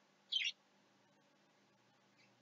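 A single short high-pitched chirp about a third of a second in, then near quiet.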